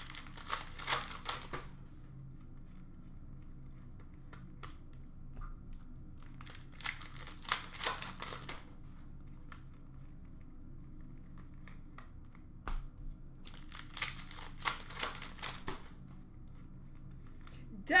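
Plastic foil wrappers of hockey card packs being torn open and crinkled by hand, in three bursts about six seconds apart, with faint clicks of cards being handled between them.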